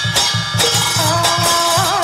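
Traditional Vietnamese Buddhist ritual music: quick, steady drum strokes with bright percussion. About a second in, a held, wavering melody line comes in over them.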